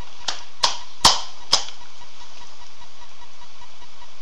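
Four sharp knocks in quick succession, the third, about a second in, the loudest, over a steady hiss and a low pulsing hum.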